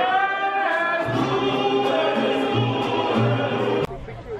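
Mariachi band with trumpet, violin and guitars playing while voices sing. A long held note slides off about half a second in, then the music goes on with deep bass notes and cuts off abruptly just before the end.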